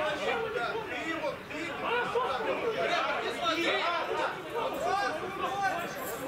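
Several men's voices talking over one another in overlapping chatter, with no single voice standing out: players gathered around the referee.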